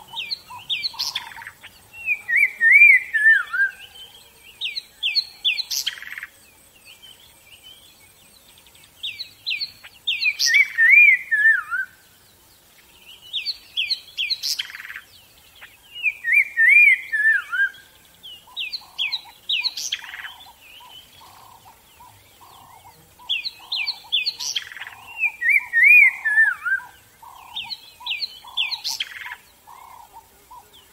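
Songbirds singing: clusters of quick high chirps and twitters come every few seconds, several of them ending in a falling zigzag phrase. From about two-thirds of the way through, a steady run of softer, lower notes repeats underneath.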